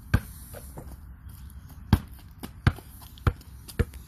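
A child's basketball bouncing on a concrete driveway as she dribbles it. There are five sharp bounces at an uneven pace, with fainter knocks between them: one right at the start, a gap of almost two seconds, then four more in the last two seconds.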